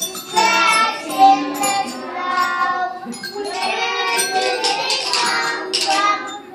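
A group of young children singing a song together, with occasional sharp taps of small percussion such as rhythm sticks and a light jingling.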